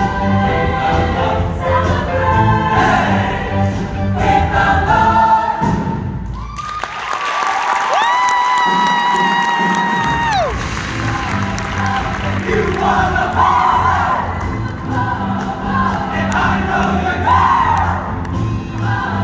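Show choir singing over a backing track with a steady beat. About halfway through, the beat drops out and one long high note is held for about two and a half seconds, sliding up into it and falling away at the end, before the full music returns.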